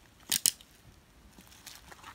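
Scissors snipping through a bubble-wrap bag: two quick cuts close together about half a second in, followed by faint crinkling of the plastic as it is handled.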